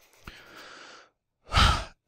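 A man breathing close to the microphone between sentences: a faint drawn-out breath, then about one and a half seconds in a short, loud breath just before he speaks again.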